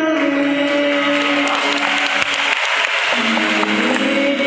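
Live Hindi song with harmonium accompaniment through a PA, the voice and harmonium holding long notes. Audience applause rises about a second in and dies away near three seconds.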